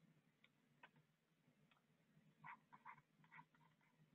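Near silence: room tone with a few faint ticks in the second half, a stylus tapping the tablet screen while writing.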